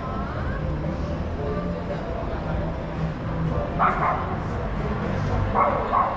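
A dog barking twice, once about four seconds in and again near the end, over steady street noise and distant voices.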